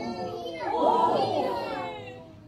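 Children's voices shouting and calling out over one another, among them calls of "Peter!", played from a video through the room's speakers. The voices are loudest in the middle and fade near the end.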